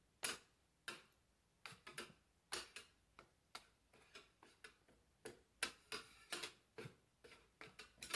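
A small phone tripod being knocked again and again to see how easily it tips over: a string of faint, light, irregular taps and clicks, about two or three a second.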